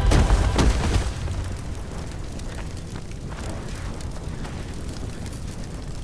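A film's explosion sound effect: a sudden loud blast right at the start that dies away over about a second into a steady low rumble of fire.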